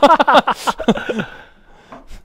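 Two men laughing heartily, loudest in the first second and then dying away to quiet.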